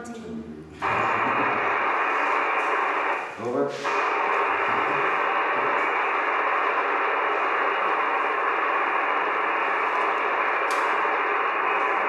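An amateur radio receiver's loudspeaker giving a steady hiss of static, cut off above and below like a voice channel, starting about a second in. A short voice breaks in briefly at about three and a half seconds.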